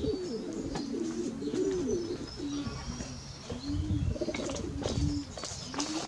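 Pigeons cooing: a run of low, wavering coos that break into separate short coos in the second half, with faint chirps of small birds above.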